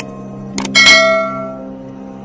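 Subscribe-button sound effect: a couple of clicks, then a bell ding that rings out and fades over about a second, over soft steady background music.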